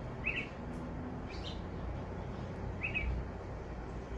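Bulbuls chirping: three short, separate chirps over a steady low background hum.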